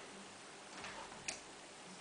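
Light clicks on a wooden parquet floor as an Old English Sheepdog puppy noses and paws at a small ball, with one sharper tap a little past the middle.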